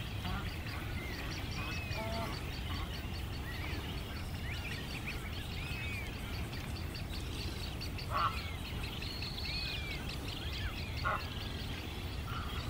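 Birds calling: repeated short, arched chirps, with two louder short calls about eight and eleven seconds in, over a low steady rumble.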